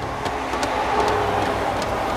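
Road traffic: cars driving past on a street, a steady rush of engine and tyre noise.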